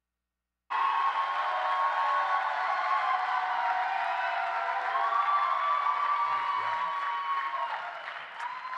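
Audience applauding and cheering, with many voices calling out over the clapping. The sound cuts in abruptly just under a second in.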